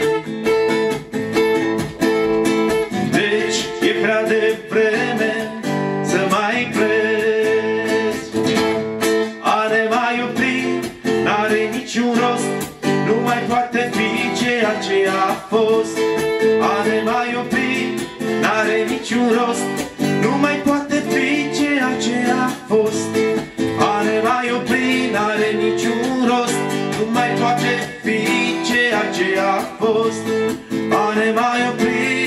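Two acoustic guitars strummed together, with a man singing along.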